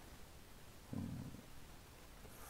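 Quiet room tone with a brief, low hummed 'mm' from a man's voice about a second in. No pick clicks stand out.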